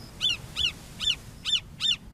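Bald eagle calling: five short, high chirping notes in quick succession, about two and a half a second.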